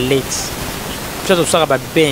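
A person's voice speaking, breaking off just after the start and resuming about two-thirds of the way in, over a steady, fairly loud hiss.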